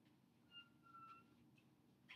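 Near silence: room tone, with a faint thin whistle-like tone lasting under a second near the middle.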